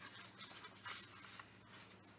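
Faint rustling and rubbing of paper as the contents of a mail envelope are handled, mostly in the first second and a half and dying away after.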